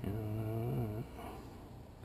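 A man's low, drawn-out wordless hesitation sound, held about a second and then trailing off.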